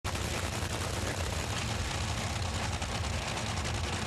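Nitromethane-burning Top Fuel dragster engine, a supercharged V8, running at idle in the staging lanes with a dense, rapid crackle of firing pulses over a deep rumble.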